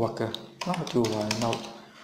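A man speaking, with a few computer keyboard keystrokes under his voice.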